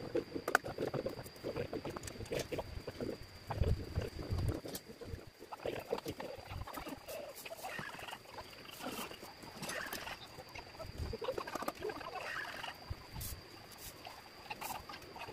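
Thin bamboo strips being worked by hand and with a knife: irregular clicks, taps and scratchy scraping as the strips are split, shaved and handled, with a few dull knocks.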